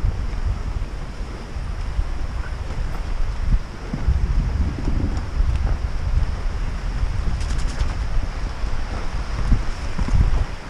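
Wind buffeting the action camera's microphone as a downhill mountain bike rolls fast along a dirt forest trail. Under it run the rumble of the tyres on dirt and the bike's occasional knocks and rattles over roots and rocks.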